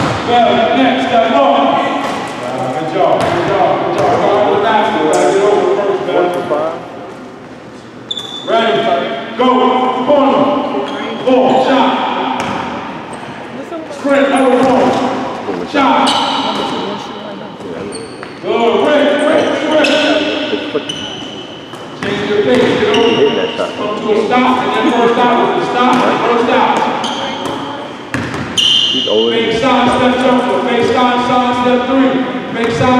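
Basketballs bouncing on a hardwood gym floor amid indistinct voices, echoing in a large hall.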